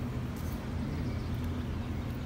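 A steady low mechanical rumble with a faint hum in it, like outdoor background noise from traffic or building machinery.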